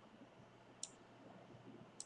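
Near silence: room tone, with one faint short click a little under a second in.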